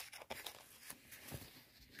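Small clear plastic bag of wire connectors crinkling and rustling as it is handled, in irregular faint crackles and clicks.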